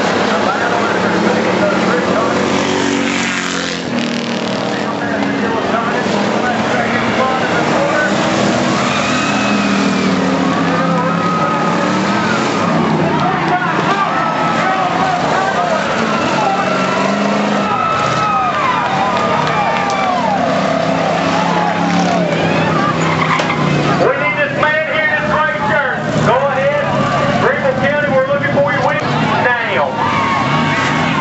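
Dirt-track race car engines running at speed, their pitch rising and falling as they rev through the turns, with voices mixed in.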